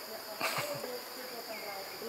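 Steady high-pitched insect chirring in the forest, with a short click or rustle about half a second in.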